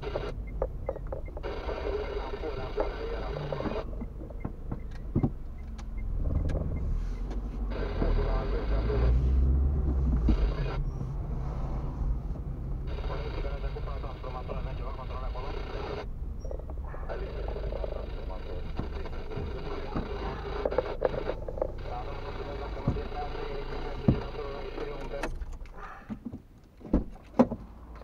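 Inside a car's cabin, low engine and tyre rumble as the car drives slowly, swelling for a few seconds about a quarter of the way in. A voice is heard in stretches over it. Near the end the rumble dies down and a few sharp clicks are heard as the car comes to a stop.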